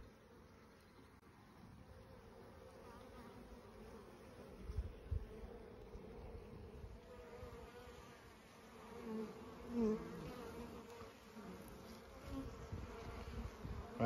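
Honeybees buzzing around an opened Langstroth hive: a faint steady hum, with a few louder, wavering buzzes of bees flying close past about nine to ten seconds in. A couple of soft low thumps a little before the middle.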